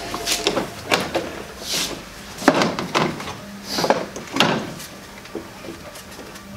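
Irregular plastic knocks, clicks and scrapes as a BMW E90 headlight assembly is worked and pulled loose from the car's front end, with a few sharper knocks around the middle.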